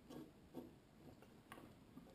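Near silence, with a few faint clicks from small plastic parts and wires being handled on a workbench.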